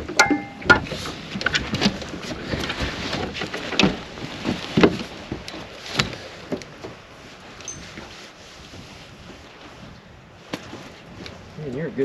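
Scattered sharp knocks and clicks in a small fishing boat over a low background hiss. They come thickly in the first half and thin out, the sound growing quieter, in the second half.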